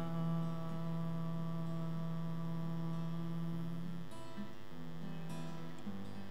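A man singing one long held note over acoustic guitar. The note ends about four seconds in, and strummed guitar chords carry on.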